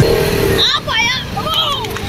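A high voice cries out in short gliding calls over the steady rumble of motorcycles and street traffic.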